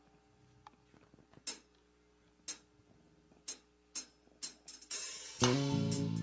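Drum count-in of a live band: sharp percussion ticks, about one a second, then two a second, then a quick flurry. The full band comes in together with a shouted "Toma" near the end.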